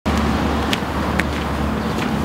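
Steady low rumble of road traffic. Two short sharp ticks come about half a second apart near the middle.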